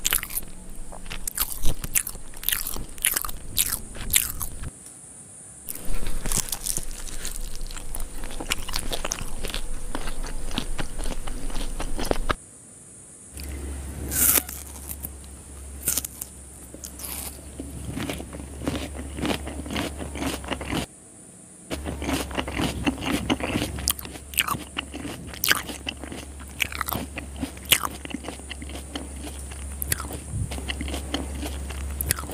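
Close-miked eating: irregular biting, crunching and chewing, with crisp crunches as raw onion is bitten. The sound drops out briefly three times, and a faint low hum sits under the second half.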